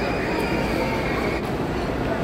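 Steady rumbling noise with no distinct events, with a faint high steady tone that stops about one and a half seconds in.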